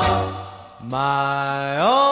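A 1950s doo-wop recording fades out over the first second. Then the next track opens with a single low sung note, held for about a second and then sliding upward.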